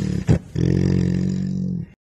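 A tiger growling: one long, low, steady growl of about a second and a half that breaks off near the end, with a sharp knock just before it.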